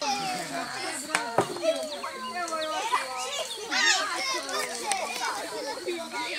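Several children's voices talking and calling over one another in lively, unintelligible chatter, with a few sharp clicks about a second in.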